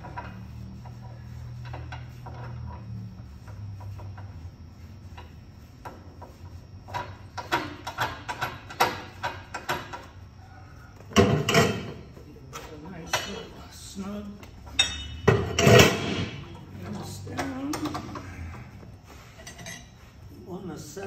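Steel tooling clinking and clanking as a punch is fitted into the punch station of an Edwards 60-ton ironworker: a low hum for the first few seconds, then a run of light metallic clicks and two louder clattering bursts about eleven and fifteen seconds in.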